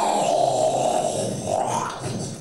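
Wordless sound-poetry vocalisation: a loud, rough, grunt-like voice that slides down in pitch, then rises again near the end.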